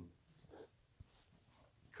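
Near silence between spoken phrases, with a faint short breath about half a second in and a small click at about one second.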